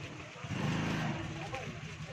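Crowd murmur, with a vehicle engine running close by that swells about half a second in and fades away after about a second.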